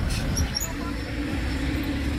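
Outdoor background ambience: a steady low rumble, with a faint steady hum coming in about half a second in and a few faint high chirps near the start.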